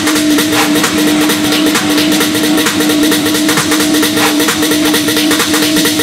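Techno from a DJ mix: a steady synth note repeated in phrases of about a second, over fast, busy ticking percussion, with no kick drum in this stretch.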